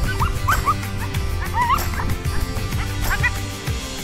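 A dog whining and yipping in short, high, rising cries, in three bursts: near the start, in the middle, and about three seconds in.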